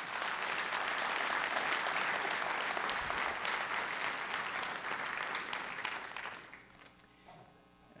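Congregation applauding, fading away after about six seconds.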